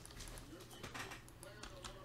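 Faint typing on a computer keyboard, with a few scattered keystrokes and clicks.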